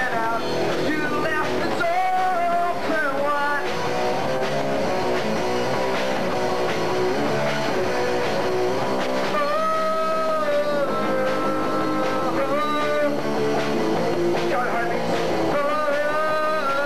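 Live rock band playing: a lead vocal sung over electric guitars and a drum kit, with a long held sung note about ten seconds in.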